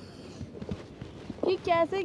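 A few faint footsteps tapping over a quiet outdoor background. About one and a half seconds in, a woman's voice starts speaking.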